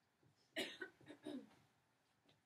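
A person coughing: a sharp first cough about half a second in, followed quickly by two or three smaller coughs.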